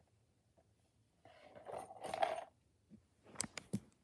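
Plastic fidget toys being handled: a rustling shuffle for about a second and a half, then a few sharp plastic clicks near the end.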